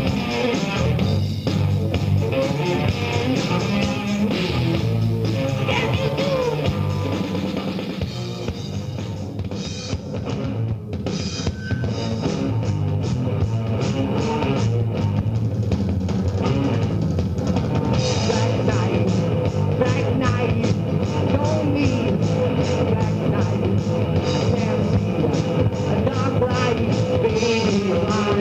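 Hard rock band playing live: electric guitars and drum kit going full on, thinning briefly near the middle before the whole band comes back in.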